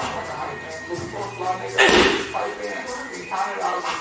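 A boxing glove landing on a coach's pad with one loud slap about two seconds in: a left hook thrown on the coach's call.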